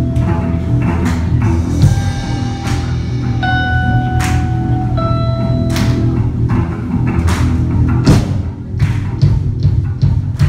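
Live rock band playing: long held lead notes over drums, cymbal hits and bass.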